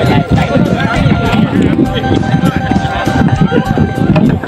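Several people talking and calling out at once, with a thin steady tone held underneath.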